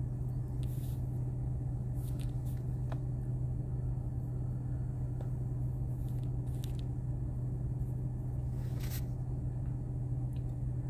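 A steady low hum, with a few faint short clicks scattered through it.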